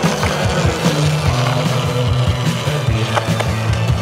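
Soundtrack music with a bass line and a steady beat.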